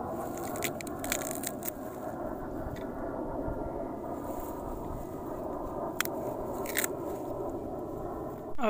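Rustling of carrot foliage with a few sharp crisp snaps and clicks as freshly pulled carrots are handled, over a steady low background noise.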